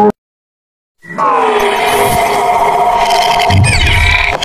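Background music cuts off right at the start, followed by about a second of silence; then an electronic logo-animation jingle comes in with a sweeping rise into sustained, swelling tones, and a low thud near the end.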